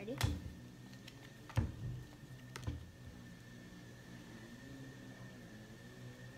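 Playing cards laid down one at a time on a table, making a few soft taps and knocks in the first three seconds. A faint steady hum runs underneath.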